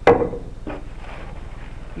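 A sharp knock of an object set down on a tabletop, then faint rustling of plastic cling wrap being handled.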